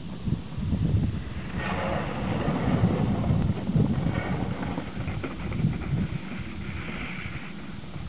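Wind buffeting the microphone throughout, with an iceboat's runners hissing across wet ice as it sails close past, from just under two seconds in until near the end.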